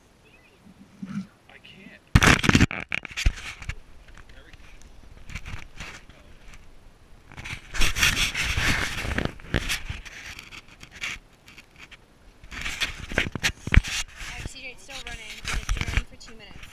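Handling noise from a handheld action camera: fingers rubbing and knocking on its housing, in several loud bursts.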